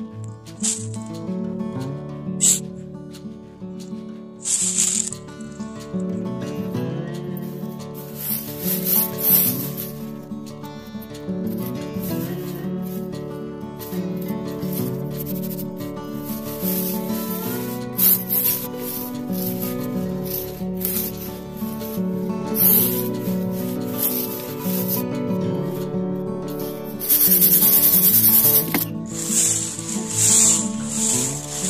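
Background music playing, over bursts of gritty scraping and hiss as dry soil is rubbed through a wire-mesh sifting screen. The longest and loudest scraping comes near the end.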